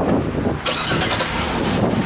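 Wind buffeting the camera's microphone, an uneven rushing noise.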